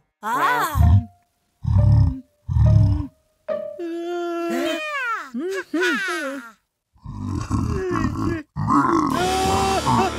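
Cartoon characters' voices straining and grunting: a falling cry, then three short heavy grunts, then wavering, whining vocal sounds. Background music comes in during the second half.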